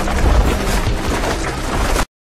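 Film action-scene soundtrack: a loud, dense rumble of crashes and impacts mixed with music.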